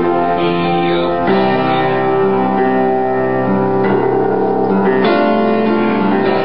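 Piano playing sustained chords in a slow ballad accompaniment, changing to a new chord about a second in and again near the end.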